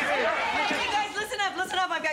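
Overlapping voices: several people talking and calling out at once, with no single clear line of speech.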